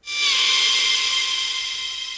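A single bright, high synthesized note played on a Haken Continuum Fingerboard. It starts suddenly, slides down a little in pitch in its first moment, then holds steady and slowly fades.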